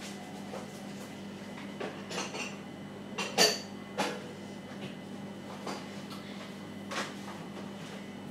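China cups and saucers being handled, clinking and knocking. There are a few light clinks, a sharper knock about three and a half seconds in, another at four seconds and one more near seven seconds.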